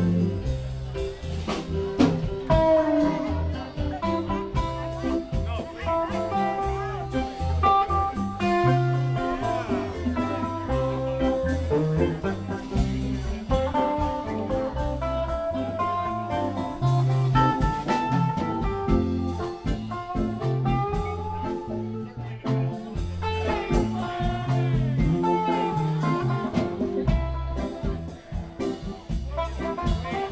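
Live blues-rock band playing: electric guitar lines over electric keyboard, bass notes and a drum kit, continuous throughout.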